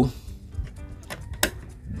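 Background music with a single sharp plastic click about one and a half seconds in: the hinged clear terminal cover of a CCTV power supply unit snapped shut over its wired terminal block.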